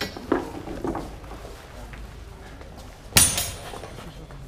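Two steel training longswords clashing once, a sharp metallic strike with a brief ring, a little over three seconds in.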